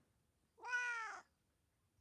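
A domestic cat giving one short meow, rising and then falling in pitch, about half a second long, a little past the middle.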